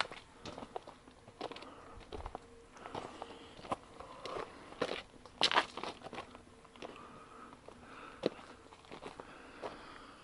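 Footsteps crunching and scuffing on a stony dirt trail littered with leaves, in an irregular walking rhythm, with one louder step a little past the middle.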